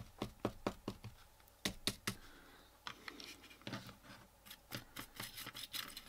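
Faint, irregular taps and scratchy strokes of a short stiff paintbrush. It is dabbed out on a paper tissue, then dry-brushed across the ridged plastic of a model railway wagon, with quicker strokes near the end.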